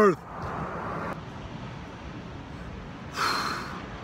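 A short, breathy exhale by a person, a sigh-like puff about three seconds in, over a steady background noise.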